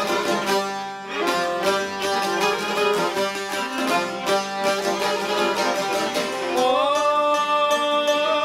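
Albanian folk music: a long-necked sharki and other plucked lutes played together with violin and accordion. A man's singing voice comes in about six and a half seconds in.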